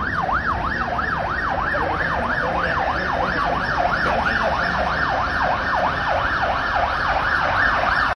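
Emergency vehicle siren sounding a fast up-and-down yelp, about three to four sweeps a second, loud and unbroken.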